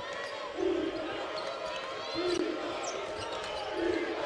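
A basketball being dribbled on a hardwood court, with a few low thumps from the ball over a steady background of arena crowd noise and faint voices.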